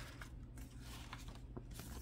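Faint handling of a paper envelope and note, a few soft paper ticks over a low steady room hum.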